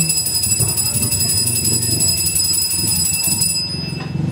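Altar bells rung rapidly and continuously at the elevation of the chalice during the consecration at Mass, stopping shortly before the end.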